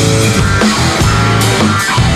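Punk rock band playing live: electric guitar, bass guitar and drum kit, an instrumental passage with no vocals.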